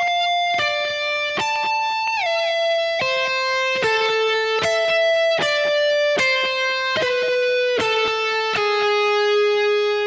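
Kiesel DC700 electric guitar, tuned a whole step down, playing a high-register lead lick slowly one note at a time, each note picked separately. There is a downward slide about two seconds in, the line steps lower overall, and the last note rings for about two seconds.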